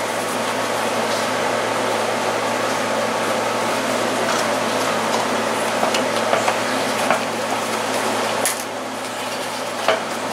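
Scattered light clicks and knocks from hands handling an old box fan's blade and metal housing, over a steady background hiss.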